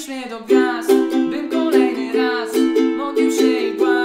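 Ukulele strummed in a steady rhythm through a chord progression, with a man singing the melody over it.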